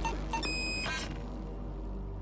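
Electronic intro music ending with a few short synthetic beeps in the first second, then fading away.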